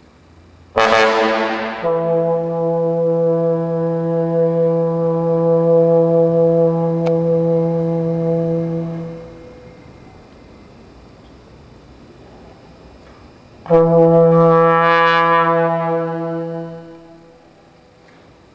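Unaccompanied trombone playing long held low notes: a hard, bright attack about a second in that drops straight into a sustained low note fading out around nine seconds. After a pause of several seconds, a second loud held note on the same pitch starts near the end and fades away.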